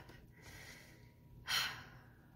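A woman takes one short, audible breath in, about a second and a half in, during a pause in her speech. The rest is quiet room tone.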